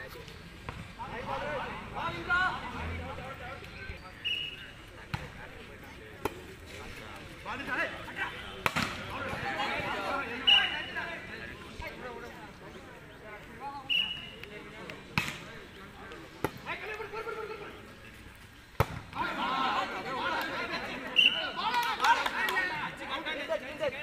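Volleyball rallies: a number of sharp slaps of the ball being hit, spread through the stretch, amid shouting and calls from players and spectators.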